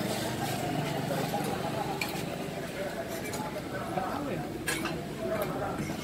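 Background murmur of diners talking, with a few sharp clinks of plates and cutlery.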